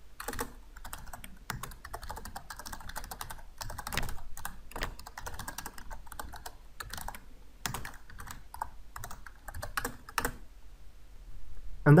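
Typing on a computer keyboard: a long run of irregular keystroke clicks with short pauses between bursts.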